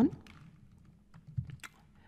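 A few computer keyboard keystrokes, short sharp clicks coming close together about a second and a half in, after the tail of a spoken word at the very start.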